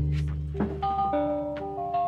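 Background music: a low held note gives way, about half a second in, to a tune of short chiming notes stepping up and down in pitch.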